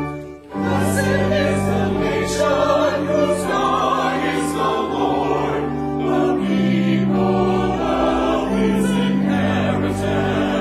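Church choir singing with organ accompaniment; after a brief dip in the organ, the voices come in about half a second in and carry on over held organ chords.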